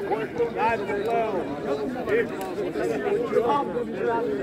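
Crowd of spectators chattering, many voices talking over one another without a break.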